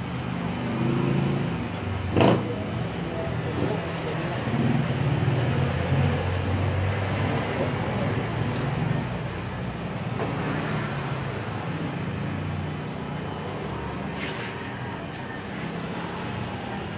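Indistinct voices over a steady low rumble, with one sharp click about two seconds in.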